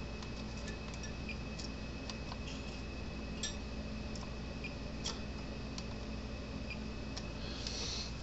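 Faint, scattered ticks of multimeter probe tips touching component leads and solder joints on a fence charger circuit board during a diode test, over a steady low hum and a thin high whine.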